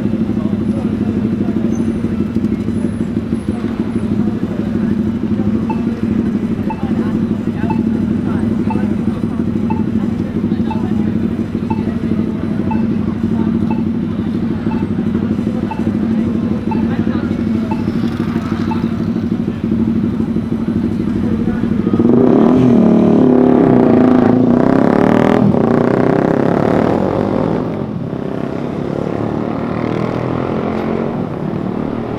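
Busy city intersection: steady traffic hum mixed with crowd voices, with a faint regular ticking through the middle. From about 22 to 27 seconds in, a louder vehicle engine passes and accelerates, then drops back to the traffic hum.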